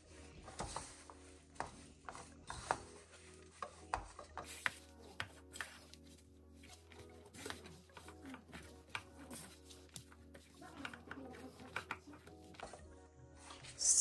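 Hands mixing and squeezing crumbly dough in a stainless steel bowl: quiet, irregular rubbing and light knocks against the metal as flour and wet garlic paste are worked together. Soft background music plays underneath.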